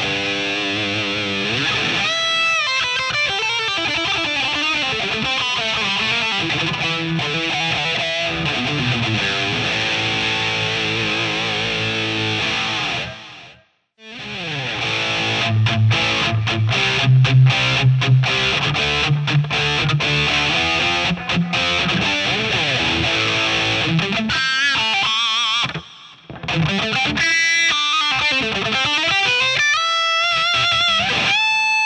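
Ibanez AZ Prestige electric guitars played with a distorted tone, with sliding and bent notes. The playing stops for a moment a little before halfway, where the AZ2402 gives way to the AZ2202A, and there is another short dip near the end.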